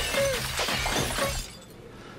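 Glass and kitchen items crashing and shattering in a dense, continuous clatter, which stops abruptly about one and a half seconds in.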